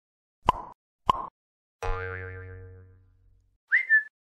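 Cartoon sound effects for an animated title card: two short plops about half a second apart, then a boing with a wavering pitch that fades away over about a second and a half, and near the end a short high whistle that rises and holds.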